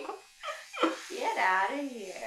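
Laughter: a couple of short bursts, then a longer wavering laugh in the second half.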